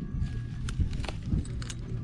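Rustling of bell pepper leaves, with a few short sharp clicks about half a second apart, as a pepper is twisted off the plant by hand.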